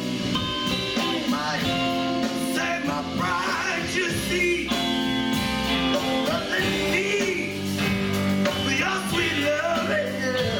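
Live funk band playing with a horn section, electric guitar, bass and drums, with bending melodic lines over a steady groove.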